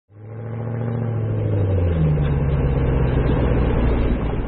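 Car engine running with a deep, steady rumble that fades in at the start; about two seconds in, a higher note joins and the pitch shifts.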